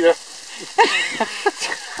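A person's voice: a short wordless vocal sound, such as a laugh or exclamation, about a second in, after the last word of a sentence.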